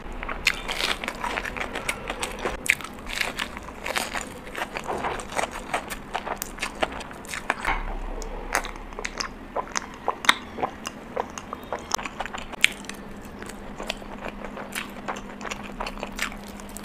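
Close-miked eating: biting and chewing bread and spicy chicken curry, heard as a fast, irregular run of sharp mouth clicks and smacks.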